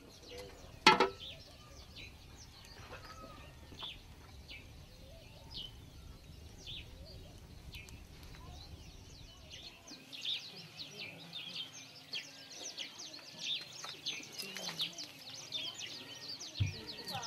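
Small birds chirping, many short high chirps that come thicker in the second half, and one sharp knock about a second in.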